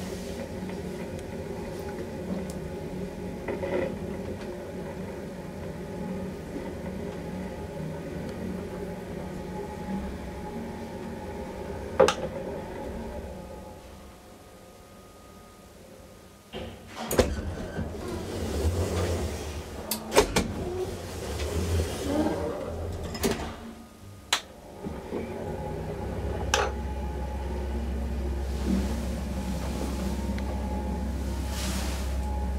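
Old ASEA traction elevator travelling with a steady motor hum, then stopping with a sharp click. After a short quieter spell comes a run of loud clunks and knocks from the car doors and machinery, and a low hum sets in near the end.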